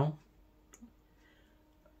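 Near silence after the last word of a man's sentence, broken by one brief, faint click a little under a second in.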